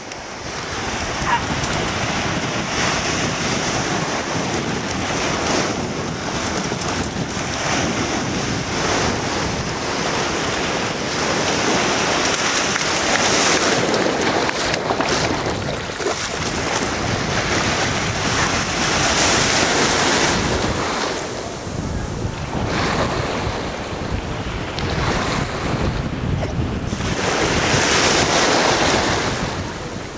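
Small waves washing onto a beach, with wind buffeting the microphone; the rushing noise rises and falls every few seconds.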